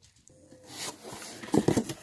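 Cardboard shipping box being opened by hand, its flaps rubbing and scraping. It starts faint, grows louder after about half a second, and has several sharp scuffs in the last half second.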